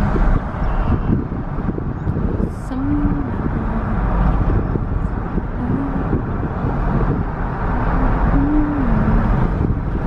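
Road and engine noise heard from inside a moving car, a steady low rumble. A few short tones rise and fall over it, at about three, six, eight and a half seconds in.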